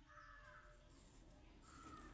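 Near silence: quiet room tone with faint distant bird calls, twice.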